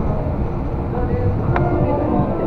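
Disney Resort Line monorail running, its rumble heard inside the car, with the on-board background music playing over it in held, changing notes.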